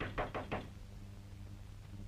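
Rapid knocking on a door, four quick raps in the first half second or so, over a steady low hum.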